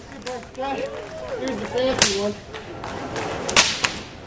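A whip cracking in a stage performance: one sharp crack about halfway in, then two more in quick succession near the end.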